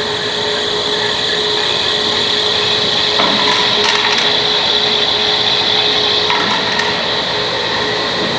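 Belt conveyors of a recycling picking table and infeed running, each driven by a 10 hp three-phase electric motor through a 25:1 gear reducer: a steady mechanical running noise with a steady tone through it. A few faint ticks come around the middle.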